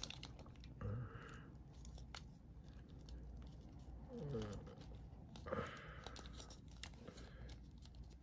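Hands fitting plastic accessories onto a plastic action figure: faint rubbing and small clicks of plastic on plastic, with a short scraping sound about a second in and a longer one near six seconds.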